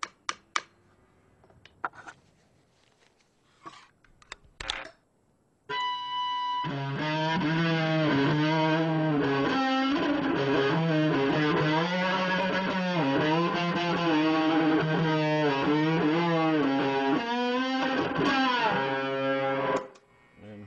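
Several sharp hammer taps on nails, then, about six seconds in, a homemade one-string electric guitar (a wire nailed to a plank with a bottle bridge and a pickup) played loud and distorted through a guitar amp, its pitch sliding up and down. The playing cuts off just before the end.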